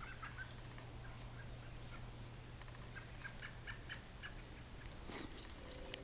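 Small birds chirping faintly: many short, scattered chirps, with a quick run of higher, thinner notes near the end.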